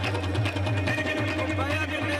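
Qawwali music: voices singing over tabla drumming.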